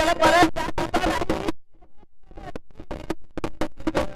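A man's voice over a held harmonium note for about a second and a half, then a brief lull. After that, sharp wooden clicks of kartal clappers and dholak strokes start up and build as the bhajan accompaniment resumes.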